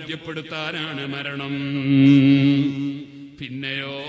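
A man's voice chanting a melodic line in a recitation style, holding one long note about two seconds in.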